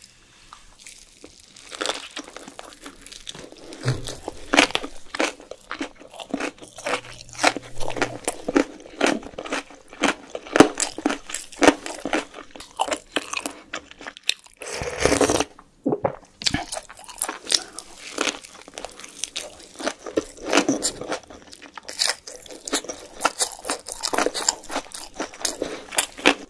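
Close-miked chewing and crunching of mini gimbap (seaweed-wrapped rice rolls), with many small wet clicks and crunches. About halfway through there is one louder, longer sound as a spoonful of tteokbokki sauce is taken into the mouth.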